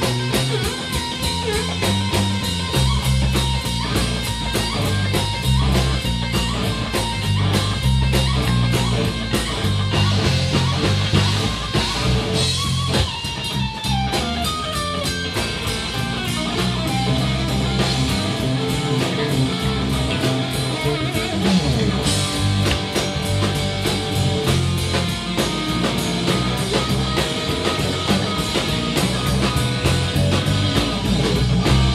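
Live instrumental funk-blues rock from a band: electric guitar playing over bass guitar and a drum kit, with a long falling glide in pitch about halfway through.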